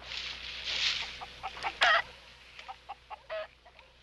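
Chickens clucking, a few short calls, over a soft hiss of background noise that fades after the first second and a half.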